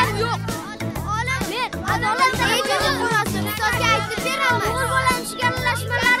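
Background music with a repeating bass line, mixed with a crowd of children shouting and calling to one another as they play.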